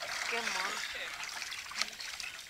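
Water running off and splashing around a swimmer as he climbs up out of waist-deep water onto another man's hands, a steady trickle and slosh.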